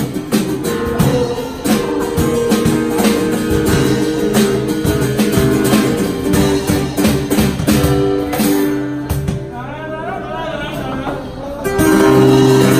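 Live acoustic band playing: strummed acoustic guitar over a steady beat of cajon and drum-kit hits. A little past the middle the beat drops away and the music thins out, with a voice heard over it, before the full band comes back in right at the end.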